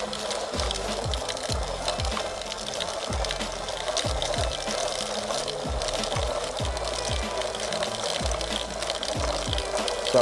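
Coated seed pellets pouring into a plastic spreader hopper, a steady rushing hiss, under background music with a steady beat.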